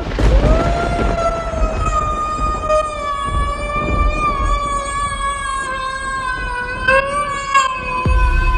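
A long, steady high tone from a film clip's soundtrack, sinking slowly in pitch over several seconds above a low rumble, with a brief wobble near the end.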